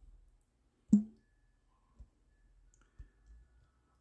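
A mostly quiet room with two faint taps about a second apart, from a finger tapping a phone's touchscreen while working a Bible app; a single spoken word comes just before them.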